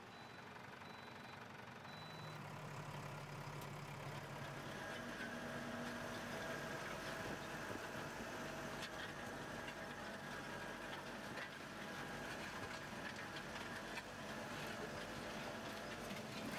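Tractor's diesel engine running steadily as the tractor drives over a ploughed field, a low even hum that grows gradually louder over the first several seconds.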